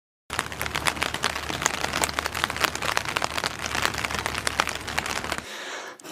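Dense crackling noise, many small irregular clicks over a low steady hum, stopping about half a second before the end.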